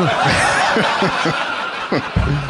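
A crowd laughing throughout, with a man laughing in short bursts close to a microphone.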